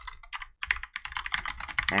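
Typing on a computer keyboard: a quick run of key clicks, with a couple of brief pauses about halfway through.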